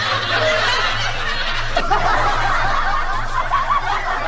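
Continuous canned laughter: several voices snickering and chuckling without pause, over a steady low hum.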